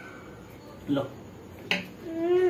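A single sharp click near the end, in a quiet small room, with a short spoken word just before it.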